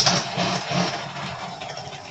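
Small countertop electric can opener switched on with a click, its little motor running briefly with a buzzing hum that dies away over a second or two.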